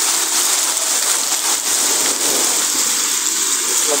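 Heavy hail and rain pouring down onto the street and pavement, a loud, steady hiss.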